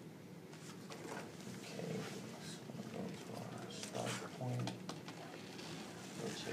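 Paper rustling and flicking as the pages of a ring-bound test easel are turned over one after another, with a low voice sound about four seconds in.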